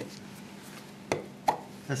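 Two short sharp knocks, about half a second apart, as a small plastic bottle is handled on a table, over faint room hiss.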